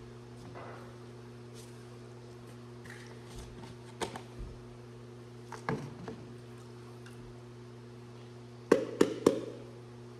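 A glass jar and a plastic bowl clicking and knocking as they are handled while a bee sample is sieved: a few scattered knocks, then three sharp knocks close together near the end. A steady low electrical hum runs underneath.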